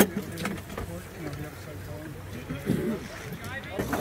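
Indistinct voices of sailboat crew talking quietly, with a sharp click right at the start.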